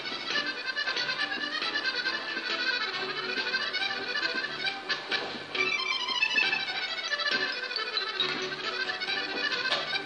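Musette accordion music: an accordion playing a lively dance tune over a steady bass accompaniment.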